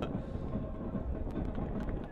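Stadium field ambience on a soccer broadcast: a low, steady rumble of crowd and open-air noise with a few faint ticks.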